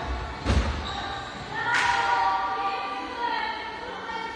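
A ball thudding hard on an indoor court about half a second in, then a second sharp hit a little over a second later, with children's voices.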